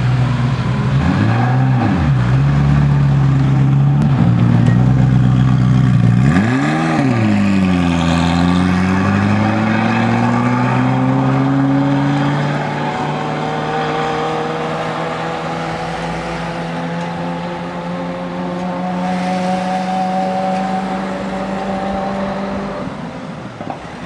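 Ferrari F40's twin-turbo V8 idling, revved in two quick blips, then pulling away with the engine note climbing slowly as the car drives off and fades into the distance.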